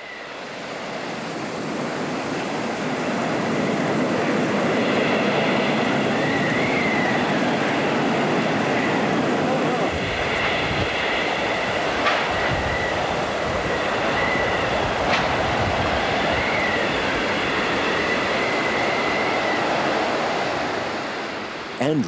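Hurricane-force wind blowing steadily, with a thin whistle that wavers in pitch, the sound of wind through wires and structures. From about halfway through, gusts buffet the microphone, and there are a couple of brief sharp cracks.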